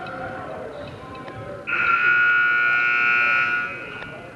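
Basketball gym buzzer sounding one loud, steady blast of about two seconds, starting a little under two seconds in.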